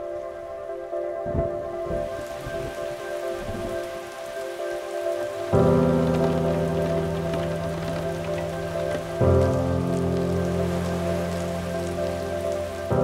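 Steady rain falling, with slow music of long held chords underneath. The chords change about five and a half seconds in and again about nine seconds in, getting louder at each change.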